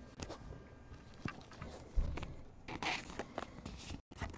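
Trading cards being handled: faint clicks and short rustles as cards are slid and flipped, with a soft knock about two seconds in and a brief rustle of card on card just before three seconds.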